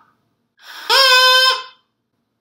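Plastic drinking-straw reed, cut to a point and halved in length, blown once. A breathy start settles into a steady, buzzy reed tone about a second long. It sounds higher-pitched because the straw is shorter.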